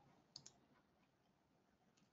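Near silence broken by two faint, quick clicks close together about half a second in: a computer mouse button being clicked.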